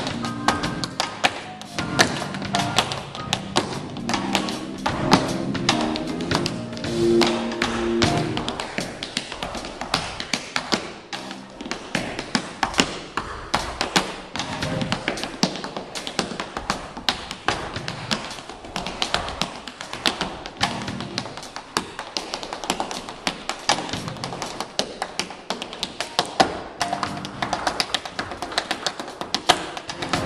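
Tap shoes striking a wooden stage floor in fast, dense rhythms, with a live jazz trio of piano, electric bass and drums playing along. After about eight seconds the piano and bass drop back, leaving the taps mostly on their own until the band fills in again near the end.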